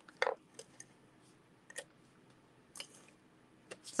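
Faint desk handling while liquid glue is squeezed from a clear bottle onto a cardstock panel: a few short, scattered clicks and taps, the sharpest about a quarter of a second in.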